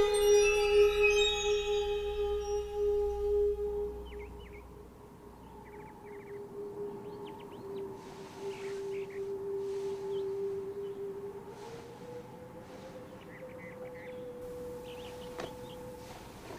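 A sustained, eerie musical drone, loud at first, drops away after about four seconds and carries on softly, rising slightly in pitch near the end. Over the soft part, small birds chirp now and then.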